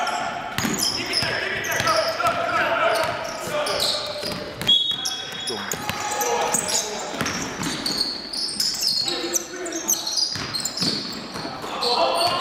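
A basketball bouncing on a wooden gym floor as players dribble during play, with players calling out in a large, echoing hall.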